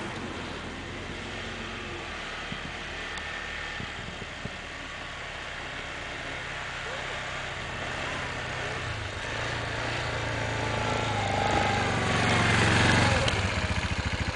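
Yamaha Kodiak ATV's single-cylinder four-stroke engine running as the quad ploughs through deep snow toward the listener, growing steadily louder and loudest near the end as it pulls up close.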